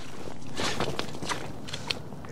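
Footsteps crunching on shingle, a walker's steady tread on a loose pebble path.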